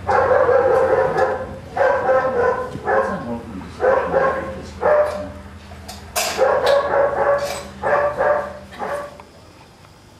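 American bulldog barking repeatedly, about ten loud barks over nine seconds, stopping shortly before the end.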